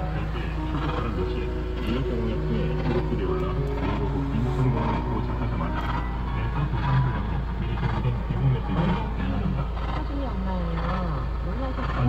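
Voices and some music from a car radio playing inside the cabin, over a steady low hum.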